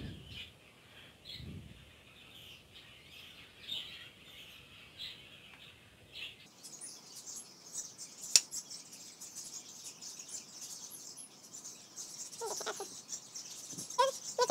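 Faint bird chirping: many short, high chirps in quick succession. A single sharp click sounds a little past the middle.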